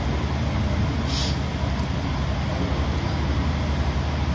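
Steady low hum with a continuous rushing background noise, and a short hiss about a second in.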